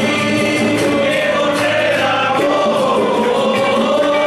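Church hymn sung by a group of voices, accompanied by strummed acoustic guitars.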